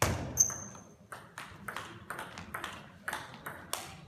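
Table tennis rally: the ball clicking off bats and table in quick alternation, about three hits a second, the loudest hit at the very start. A brief high ring follows about half a second in.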